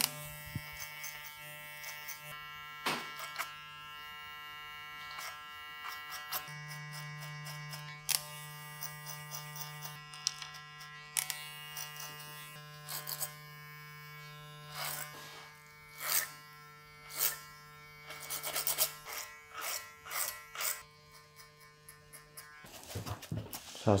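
Cordless electric hair clippers with a guard running steadily while tapering around the edges of a short haircut. The hum grows louder a few seconds in, with short crackles as the blades cut hair, and the motor stops shortly before the end.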